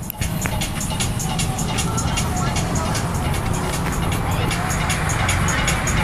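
Background music with a quick, steady beat over street and traffic noise.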